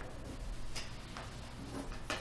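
Papers and a pen handled at a meeting table: a few faint ticks and light rustles over a steady low hum.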